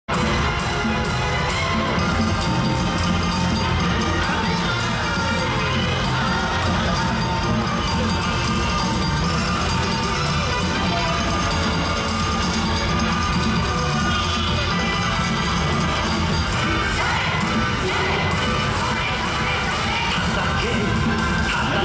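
Yosakoi dance music played loud through a parade sound truck's speakers, mixed with the dancers' shouts and a cheering crowd, steady throughout.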